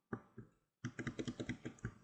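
Computer keyboard keys tapped, used to step an animation back and forth frame by frame. Two taps, a short pause, then a quick run of taps at about eight a second.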